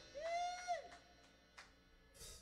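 A person's short hooting 'whoo' call, rising in pitch, holding, then dropping, under a second long; a faint click follows.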